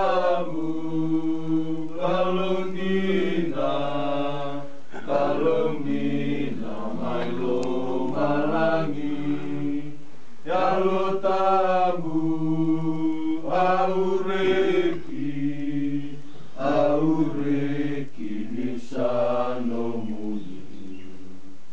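A small congregation of men's voices singing a slow hymn together. The singing comes in lines a few seconds long of held notes, with short breaks between them.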